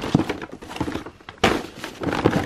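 Paper gift bags rustling and knocking against a plastic drawer organizer as they are handled and slid back into the drawer, with a louder knock about a second and a half in.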